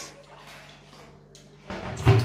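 Quiet room tone with a low, steady hum. A man's voice breaks in near the end.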